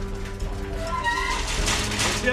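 A cat meows once, about a second in, over steady background music. A man's voice starts calling a name near the end.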